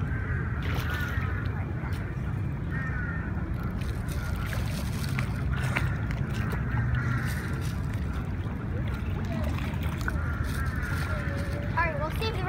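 A swarm of pond fish splashing and churning at the water surface as they feed on thrown food, over a steady low rumble. Faint voices come and go.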